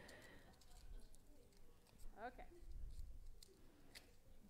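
Very quiet, faint scattered clicks as hands work the foil and wire cage off the neck of a champagne bottle. A brief faint voice sounds about two seconds in.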